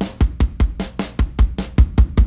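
A programmed drum-and-bass drum kit groove, a Groove Agent preset, playing fast kick and snare hits at about five a second. Its low end is being boosted through an adaptive tone-shaping plugin.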